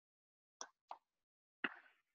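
Near silence broken by three short faint clicks: one about half a second in, another just under a second in, and a louder one shortly before the end.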